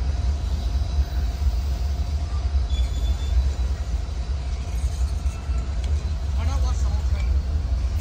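Freight train boxcars rolling past: a steady low rumble of steel wheels on the rails.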